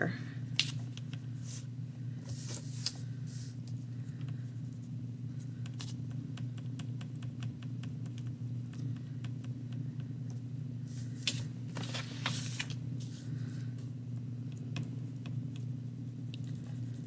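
Wax crayon scratching back and forth on paper in short strokes, with scattered small ticks and louder rasps about three seconds in and again around eleven to twelve seconds, over a steady low hum.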